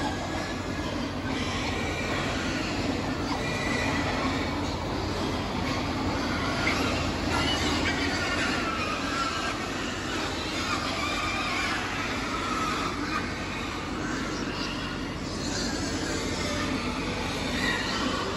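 Young pigs, about two months old, crowded along a feed trough and competing for feed. A continuous noisy din runs throughout, with short, wavering high squeals scattered through it and a steady low hum beneath.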